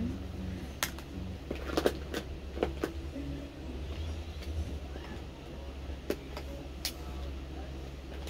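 A steady low rumble with several sharp clicks and knocks scattered through it, as of objects being handled close to a phone's microphone.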